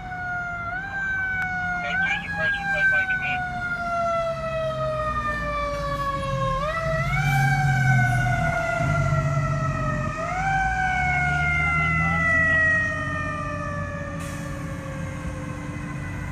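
Ladder fire truck's siren wailing: one tone that slides slowly down in pitch and is quickly pushed back up four times before a long final fall. Under it the truck's engine rumbles, loudest as the truck passes about halfway through.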